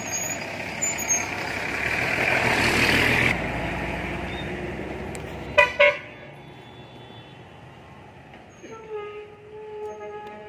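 A motor vehicle passes close by on the road: its noise builds to a peak about three seconds in, then fades away. A vehicle horn follows with two short, loud toots.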